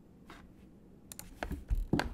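A quick run of sharp clicks and taps from a computer keyboard and mouse, starting about halfway through after a faint first second.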